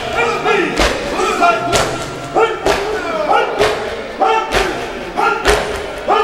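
Maatam: a group of men striking their chests in unison, sharp thuds about once a second, while male voices chant a noha between the strikes.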